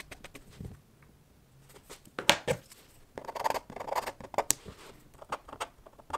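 A pen drawing on vellum paper, its tip scratching in short strokes with a denser run of scratching about three seconds in. Two sharp clicks stand out, one about two seconds in and one near four and a half seconds.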